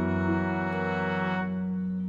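A loud, sustained brass chord held as a musical sting, one inner note stepping up shortly after it begins, the brighter top of the sound dropping away near the end.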